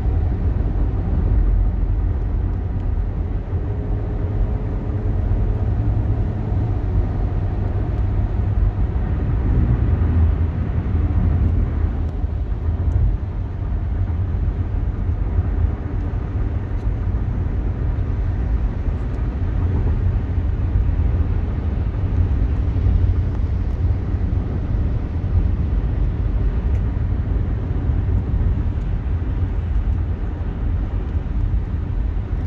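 Steady road and engine noise of a car driving on a freeway, heard from inside the car: a continuous low rumble with an even hiss of tyres and wind above it.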